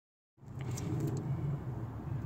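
A car engine idling: a steady low rumble that starts about a third of a second in, with a few faint light clicks over it.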